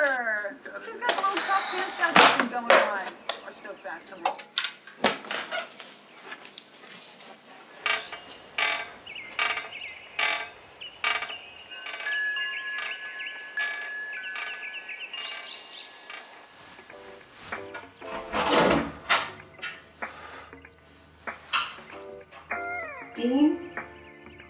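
Metal tube wind chimes ringing, struck at irregular moments, with ringing tones that linger after some strikes.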